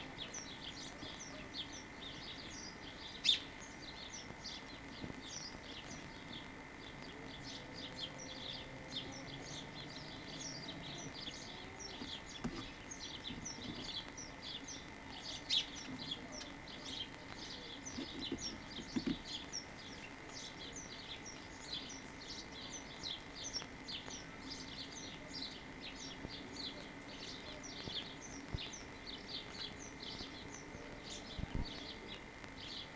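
Small garden birds chirping continuously, several short high chirps a second, over a faint steady high tone, with two brief clicks about three seconds and fifteen seconds in.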